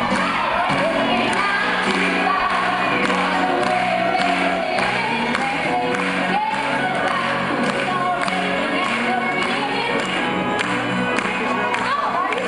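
A woman singing live into a microphone over music, with crowd noise, in an amateur recording made from among the audience in a theatre.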